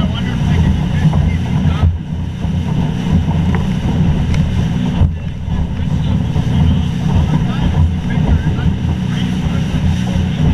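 Wind buffeting the microphone of a small motorboat underway, a steady low rumble, with the boat's motor and the hull running over light chop beneath it.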